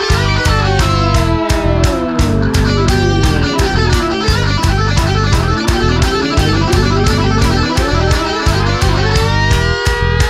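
Rock music with electric guitar over a steady drum beat. Guitar lines slide down in pitch over the first few seconds and climb back up in the second half.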